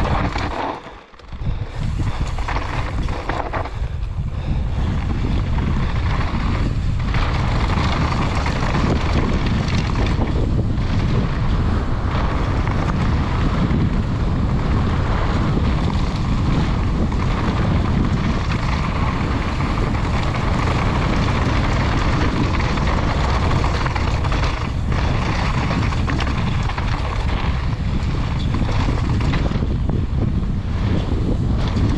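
Steady wind noise buffeting the GoPro's microphone, with mountain-bike tyres rolling over loose dirt and gravel on a fast downhill descent. The noise drops away briefly about a second in.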